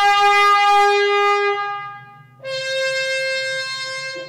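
Glass trombone, hand-blown and lamp-worked, playing two long held notes: the first stops about two seconds in, and after a brief gap a second, higher note is held to the end.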